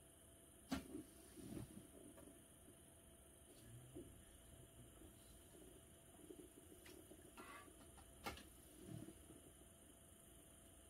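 Near silence with a faint steady hiss, broken by two sharp clicks, one about a second in and one near the end.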